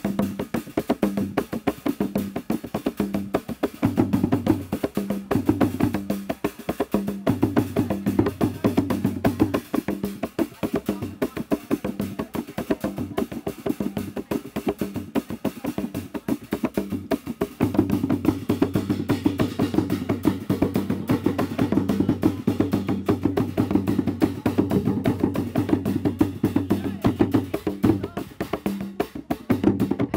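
Traditional Zanzibari ngoma drumming for the Kiluwa dance: hand drums playing a fast, dense rhythm with sharp clicking strokes. Deeper bass drum strokes come in for stretches, about 4 s and 7 s in and again from about 17 s to 27 s.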